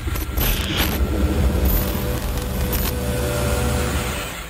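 Outro logo sting sound effect: a loud, dense rumble with a deep low end, with crackling in its first second, held steady.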